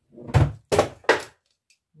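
Three quick, loud knocks within about a second, from the pouring bowl being handled against the moulds.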